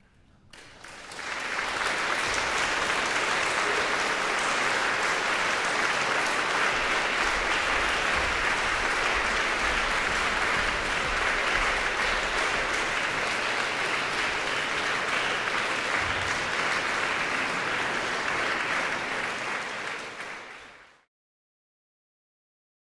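Concert audience applauding: the clapping swells up within the first couple of seconds, holds steady, then fades and cuts off shortly before the end.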